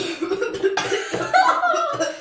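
Young boys coughing and laughing just after sipping a drink they find disgusting; laughter with rising and falling pitch takes over in the second half.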